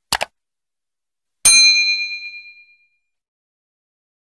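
Subscribe-button sound effect: two quick mouse clicks, then about a second and a half in a single bell ding that rings out and fades over a little more than a second.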